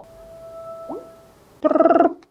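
iPhone NameDrop sound effect as two iPhones are brought together top to top: a soft steady electronic tone with a short upward swoop about a second in.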